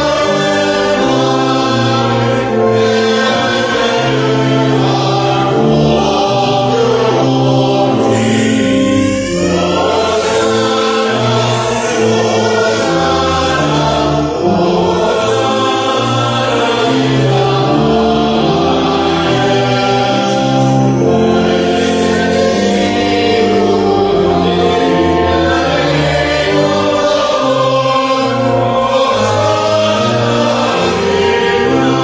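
A hymn: held organ chords changing step by step over a moving bass line, with voices singing along.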